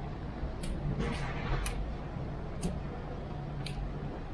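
Steady low rolling rumble of a fat bike riding along a street, picked up by a camera on the handlebars, with sharp light ticks about once a second.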